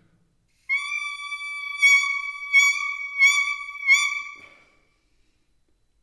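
An oboe reed blown on its own holds a steady high tone. It swells in four accents about two-thirds of a second apart, made with the mouth, then fades out.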